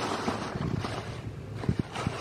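Thin plastic shopping bags rustling and crinkling as a hand rummages in them, in short irregular bursts.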